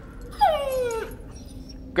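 A dog giving one short whine, about half a second in, that slides down in pitch.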